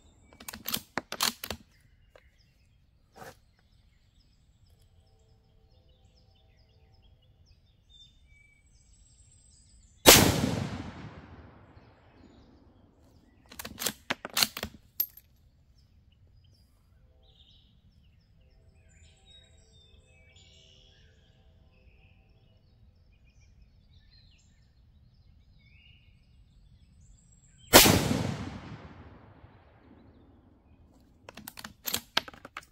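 Two rifle shots from a Savage Axis II heavy-barrel bolt-action rifle in 6mm ARC, one about ten seconds in and one near the end, each a sharp crack with a long echoing decay. Quick runs of metallic clicks, just after the start and a few seconds after the first shot, are the bolt being worked to chamber the next round.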